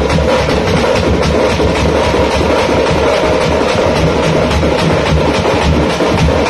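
A band of tamate frame drums and large stick-beaten bass drums playing a dense, unbroken dance rhythm, the bass drum strokes booming under the rapid slaps of the frame drums.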